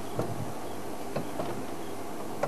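Quiet outdoor background noise with a low steady hum and a few faint, short clicks.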